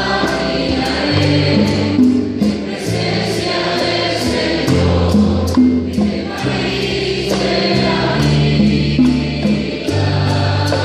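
Live Spanish-language praise song: a woman singing at a microphone over band accompaniment, with sustained bass notes and a steady beat, heard through the church sound system.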